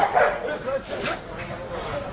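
A dog barking a few times, mixed with people's voices.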